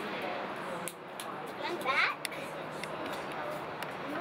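A small child's brief high-pitched shout, rising in pitch, about two seconds in, over a steady outdoor hiss, with a few light sharp taps.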